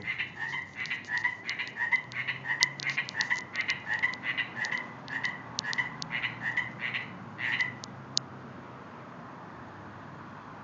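A chorus of small frogs making short, rapid croaks, one call overlapping the next, stopping abruptly about eight seconds in, as though the frogs were disturbed. Only a faint steady hiss is left after that.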